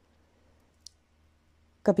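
Near silence with one faint, short click just under a second in; a woman's reading voice starts near the end.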